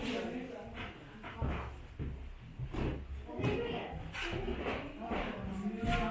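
Indistinct voices of people talking quietly in a room, too low for words to be made out.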